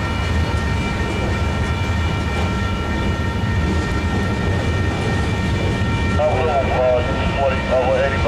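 Freight train of covered hopper cars rolling past at a grade crossing: a steady low rumble of wheels on rail, with steady high-pitched tones held over it.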